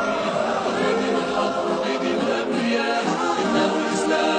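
Voices singing an Arabic nasheed in praise of the Prophet, a cappella, in long held melodic notes.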